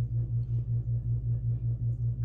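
A steady low hum that pulses evenly, about four beats a second, with nothing else over it.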